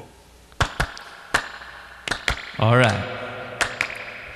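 A handful of sharp, irregular knocks and taps, with a short vocal sound about two and a half seconds in.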